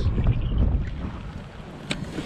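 Wind buffeting the microphone as a low rumble, easing off in the second half, with one sharp click just before the end.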